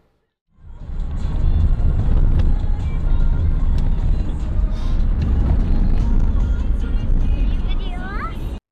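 Steady low road and engine rumble heard inside a four-wheel drive's cabin as it drives along a dirt road. It starts about half a second in.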